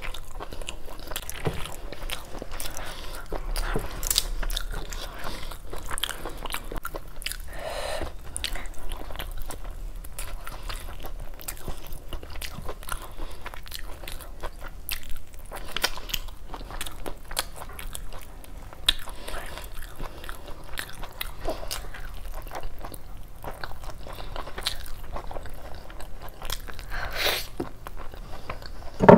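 Close-miked chewing and mouth sounds of a person eating rice and curry by hand, made up of many short, sharp clicks and smacks throughout.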